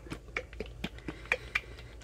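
Plastic bottle of glass etching cream being shaken by hand: a run of light clicks and knocks, about four a second, that stops shortly before the end.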